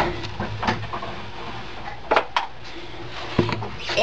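Several light knocks and clicks of small plastic containers being handled and set down on a cutting mat: a plastic cup of craft paste and a small bottle of acrylic paint. The loudest pair of knocks comes about two seconds in, over a low steady hum.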